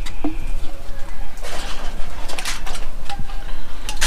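Juice poured from a bottle into an aluminium-foil wrap, with the foil crinkling and rustling in a noisy stretch near the middle, over a steady low rumble.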